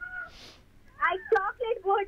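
A high-pitched voice speaking in short phrases that rise and fall, starting about a second in after a brief high call and a soft hiss.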